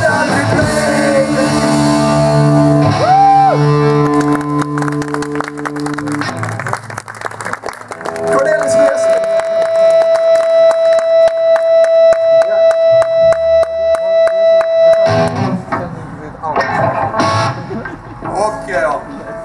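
Live rock band with electric guitar: held notes ring for the first few seconds, then a steady high note is sustained over rhythmic hand-clapping, about two and a half claps a second. The clapping stops suddenly near the end, and a voice begins talking over the amplified sound.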